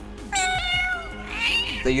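A domestic cat meowing once, a single drawn-out call, over steady background music.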